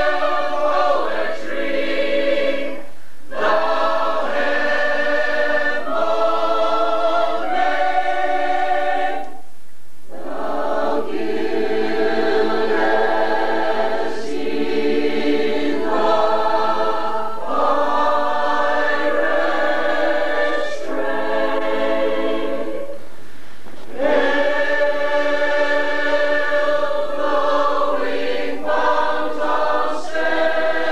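Full mixed chorus of men's and women's voices singing a slow passage in sustained chords, breaking off briefly between phrases a few times.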